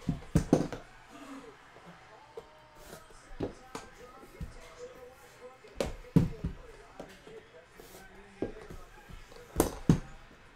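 Metal card-box briefcase being handled and turned over on a table: a series of sharp knocks and clunks, the loudest about half a second in, around six seconds in and just before the end.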